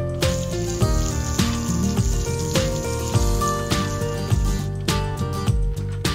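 Background music with a steady beat and held notes, with a hissing layer from just after the start until nearly five seconds in.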